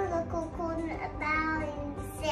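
A young girl speaking over quiet background music.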